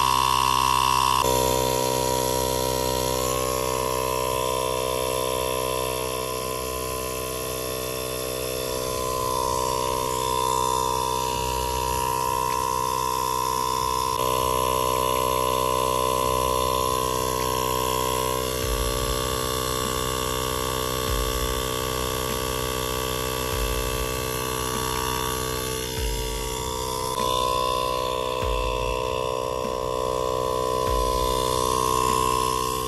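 Portable car-tyre air compressor running steadily, its small piston pump inflating a flat tyre from zero toward 35 psi.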